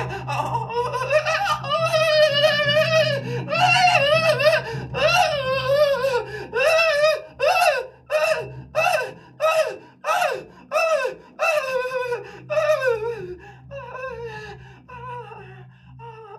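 A man's voice through a microphone in improvised, laugh-like vocalising: wavering held pitches, then a run of short falling cries about two a second that turn into longer sliding-down phrases and fade toward the end.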